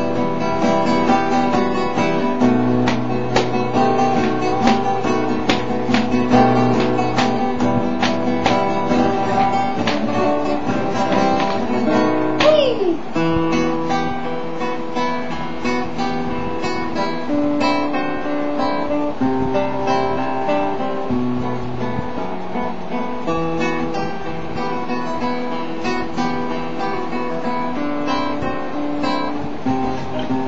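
Classical guitar playing a granadinas, a flamenco-style piece: strummed chords in the first third, then plucked melody and chords.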